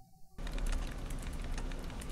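Dense crackling, clicking noise over a low rumble, starting suddenly about half a second in.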